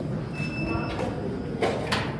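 Steady low rumble of handling and room noise from a handheld camera being carried and panned, with a short high beep about half a second in and two sharp knocks near the end.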